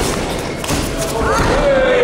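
A thud of a blow landing in a cage fight, with a few lighter knocks after it. About a second in, a loud shout from the arena rises and then turns into one long yell that slowly falls in pitch.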